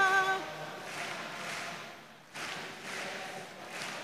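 A singing voice holds a note with vibrato that ends about half a second in, followed by a quieter lull between sung lines.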